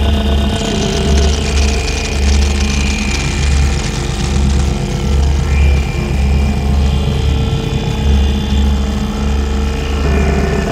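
Harsh experimental noise music: a low electronic bass throb pulsing about once a second under a steady drone and held high tones. A dense layer of crackling hiss comes in about half a second in.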